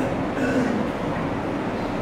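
Steady rumbling background noise, even and unbroken, with no speech in it.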